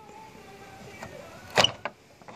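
A short click and rattle of the door handle's latch hook being pulled, drawing in the lock tabs that hold the trim, with a smaller click just after.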